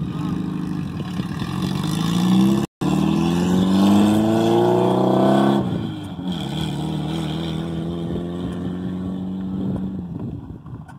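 A vehicle engine accelerating, its pitch rising steadily for about three seconds, then dropping back about halfway through and running on at a steady pitch.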